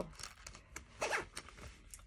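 Faint handling sounds of a small plush pouch: a few short, scratchy rustles.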